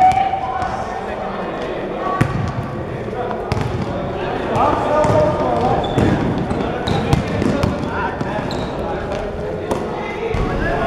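Basketballs bouncing on a sports-hall floor during a game: scattered sharp knocks throughout, with players' voices calling out in the large hall.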